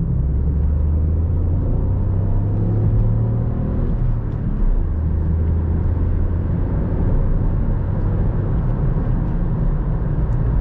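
Ford Fiesta 1.0 EcoBoost three-cylinder turbo petrol engine pulling hard under full throttle, heard from inside the cabin over road and wind noise. Its note climbs for about four seconds, dips briefly, then pulls again.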